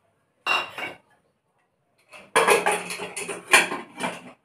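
Aluminium pressure cooker lid being put on and closed: a short clank about half a second in, then a second and a half of metal clattering and scraping near the end.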